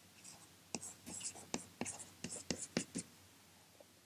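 Chalk writing a word on a blackboard: a quick run of short taps and scrapes for about three seconds, then stopping.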